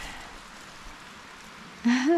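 Faint, steady outdoor background hiss with no distinct event. A woman's voice starts near the end.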